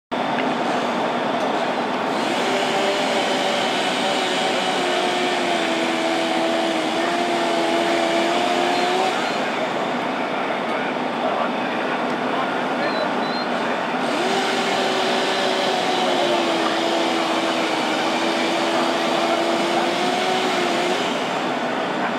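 Fireground noise: a motor runs with a steady, slightly wavering hum in two stretches of about seven seconds, over constant loud rushing noise.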